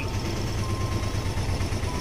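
Auto-rickshaw engine running with a steady low rumble, heard from inside the passenger cabin as it moves slowly along.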